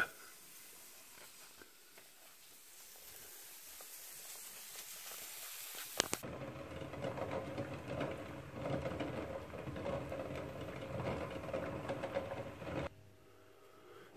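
Pot of eggs boiling hard, the water bubbling in a dense, fluttering rush. It starts with a click about six seconds in and cuts off abruptly about a second before the end; before it there is only a faint hiss.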